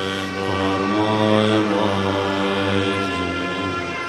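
Tibetan Buddhist monks chanting together in low, steady voices, the recitation held close to one deep pitch.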